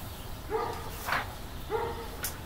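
A dog barking twice, short and evenly pitched, about half a second in and again near the end.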